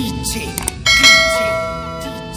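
Instrumental break in a Kannada folk (janapada) DJ song: a bell-like chime is struck about a second in, its many tones ringing on and slowly fading.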